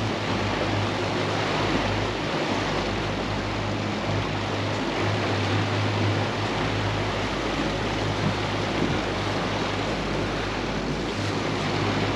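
Boat's three outboard motors running steadily with a constant low hum, over the rush of water from the hull and wake.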